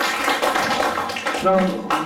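Audience applause, a dense patter of many hands clapping for about a second and a half, after which a man's voice begins.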